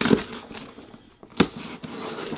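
Box cutter slitting the packing tape on a small cardboard box, a dry scraping, cut through with a sharp knock about one and a half seconds in.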